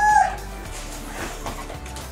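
A girl's drawn-out, excited high-pitched squeal that cuts off about a quarter second in. It is followed by quieter background music.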